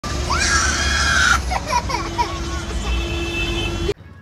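A child screams in one high cry lasting about a second, then gives several shorter cries, over the low rumble of a moving bus. A steady hum joins in the second half, and everything cuts off abruptly just before the end.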